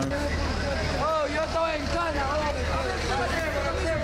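Indistinct overlapping voices over the steady low hum of an idling vehicle engine.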